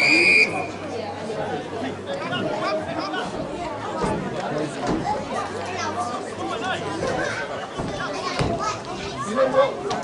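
A referee's whistle blown once, short, right at the start, then spectators chatting and calling out on the sideline.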